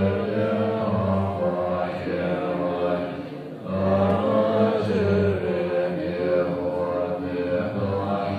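Tibetan Buddhist monks chanting prayers in unison in low voices, a steady group drone that dips briefly about three and a half seconds in and then comes back in together.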